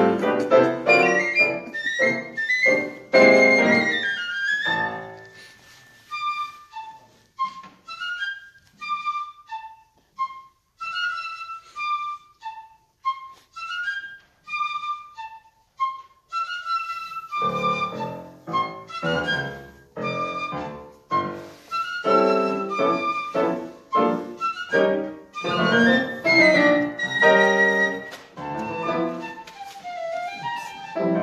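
Live contemporary chamber music with piano. Loud, dense chords thin out about six seconds in to a sparse run of short, separate high notes, and loud, full chords return a little past halfway.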